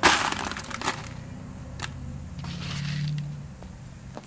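Dry rolled oats and their crinkly packaging being handled and shaken into a plastic storage bin: a loud crackling rush at the start, a second short burst about a second in, then a softer rustle around three seconds in.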